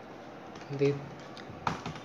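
Computer keyboard keys clicking: a few quick keystrokes near the end, typed into a Linux terminal.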